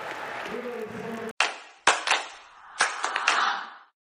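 Basketball arena crowd noise, cut off about a second in by a short logo sting: a handful of sharp, ringing hits, each dying away, that fade out near the end.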